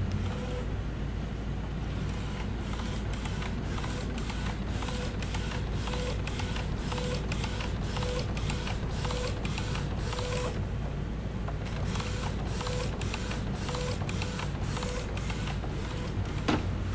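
Epson L805 inkjet printer printing onto a card in its tray: the print head carriage runs back and forth in a steady mechanical run, with regular clicks about twice a second and a short tone about once a second over a low hum.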